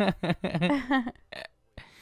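Laughter: a quick run of short voiced bursts, then a breathy exhale that trails off near the end.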